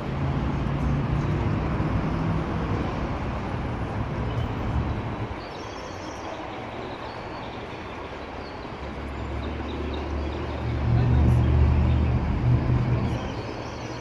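City street traffic on a wet road: an even hiss of passing vehicles with a low engine rumble that swells twice, in the first few seconds and again from about nine to thirteen seconds in, as heavy vehicles go by.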